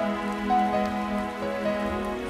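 Slow orchestral music: a melody moving in held notes over a sustained low note.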